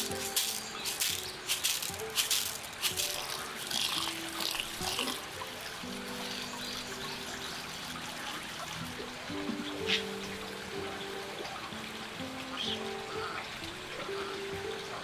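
Dry rice grains pour and rattle into a woven bamboo basket in the first few seconds. Then water trickles from a bamboo spout as the rice is washed in the basket. Background music with long held notes plays throughout.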